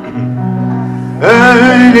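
Live acoustic guitar holding low notes, then a singer's voice comes in loud about a second in as the song begins.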